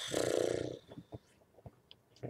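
A woman's short, breathy voiced exhale, like a sigh, lasting under a second, followed by a few faint clicks.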